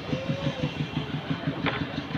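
An engine idling nearby, a steady rapid low pulsing, with a single click near the end.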